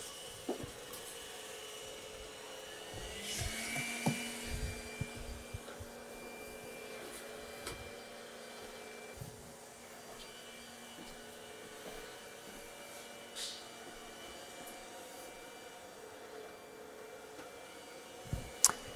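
iRobot Roomba Combo j7+ robot vacuum running, a faint steady motor whir with a few light clicks and knocks.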